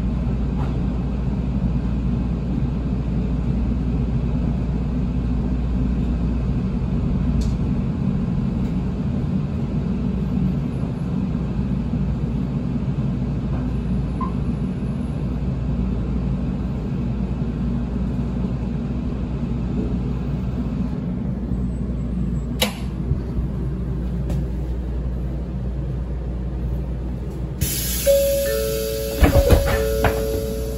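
Steady low rumble inside a Shinkansen car as the train slows and draws up at a station platform. Near the end a two-note chime sounds as the car door is about to open.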